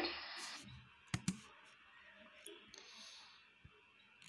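Two sharp clicks in quick succession on the laptop, advancing the slide presentation, over low room tone.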